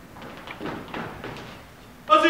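Footsteps of shoes on a wooden auditorium floor, about five irregular steps echoing in the hall.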